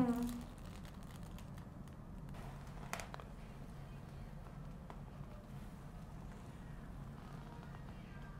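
Quiet room with a steady low hum, and one faint click about three seconds in.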